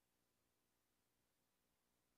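Near silence: only a very faint steady hiss and hum.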